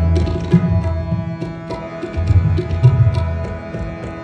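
Harmonium holding sustained chords under a tabla playing a steady rhythm, the deep bass strokes of the bayan standing out; kirtan accompaniment.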